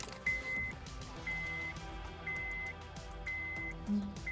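Car's electronic warning chime beeping steadily, one short beep about once a second, four times, just after the ignition is switched on.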